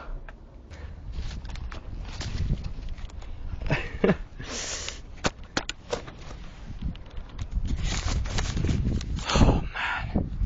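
Irregular knocks, scuffs and rustling of a person climbing up onto a garden wall, with a short burst of rustling about halfway through.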